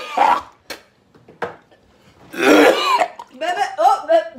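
A man gagging and coughing from the taste of balut: one harsh heave just as it starts and a louder one about two and a half seconds in, with faint clicks between, then his voice near the end.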